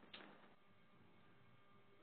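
Near silence on a teleconference audio line: faint hiss with one faint click just after the start.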